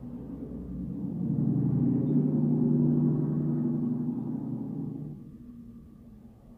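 A low, resonant droning tone, gong-like, swells up over about two seconds and fades away by about five seconds in, typical of a sound effect laid over an edit.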